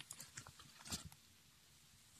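Wood fire in an open metal smoker firebox crackling faintly: a few sparse pops and ticks from the burning logs, the clearest about a second in.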